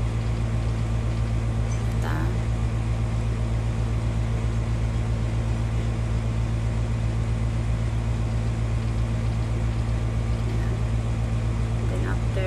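A steady, loud low hum runs unchanged throughout, with a brief faint vocal sound about two seconds in.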